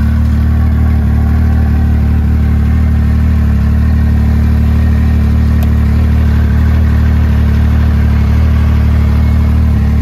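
Arctic Cat Bearcat XT 7000 snowmobile's fuel-injected 1049 cc three-cylinder four-stroke engine idling steadily.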